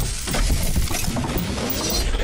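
Sound-effect sting for an animated logo: a dense run of crackling and clinking debris over a deep rumble, carrying on from a shatter just before.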